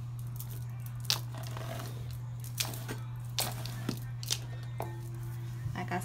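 A bundle of human hair extensions handled by hand, giving a few short rustles over a steady low hum.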